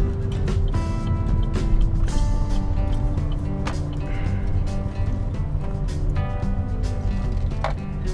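Music with held notes that change every second or so, over the low rumble of a car driving, heard inside the cabin.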